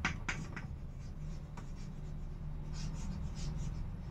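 Chalk writing on a chalkboard: short scratching strokes near the start and again about three seconds in, over a faint low hum.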